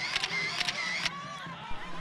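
Children's high-pitched shouts and cries with several sharp clicks during the first second, then fainter crowd noise.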